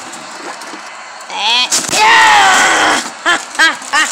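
A child yelling: a rising cry about a second and a half in, then a long, loud shout, followed by three short "ah!" cries near the end.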